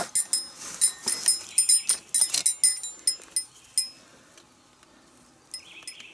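Small brass bells hanging from a belt jingle and clink in irregular bursts as the wearer moves, then die away about four seconds in. A short scraping rasp follows near the end.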